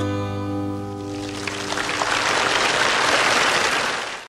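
A final chord on two acoustic guitars rings out and fades over the first couple of seconds, while audience applause rises from about a second in and fills the rest.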